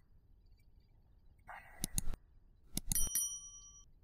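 Subscribe-button animation sound effect: a few sharp clicks, then a bright bell ding that rings on for about a second.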